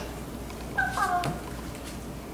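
A Hatchimal toy inside its egg gives one short electronic animal-like call about a second in. The call is meow-like and falls in pitch.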